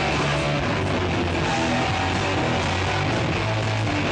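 A hard rock band playing live, electric guitars over a steady, heavy bass line.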